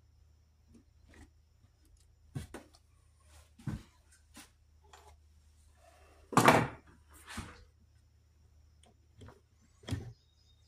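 Scattered clicks and knocks of hand tools and plastic parts being handled on a wooden workbench while a cordless chainsaw is taken apart, with one louder clatter about six and a half seconds in.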